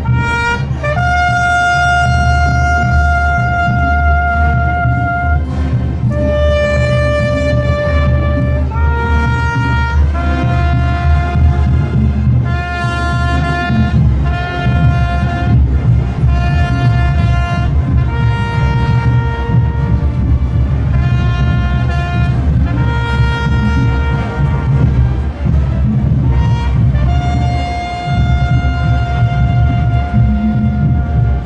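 Solo trumpet playing a slow, mournful call of long held notes for a minute of silence in honour of the dead.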